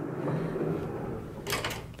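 A frosted-glass sliding bathroom door sliding along its track, with a few sharp knocks about one and a half seconds in.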